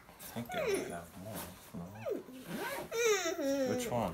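A toddler babbling: short wordless high-pitched vocal sounds that slide down in pitch, with a longer falling one near the end.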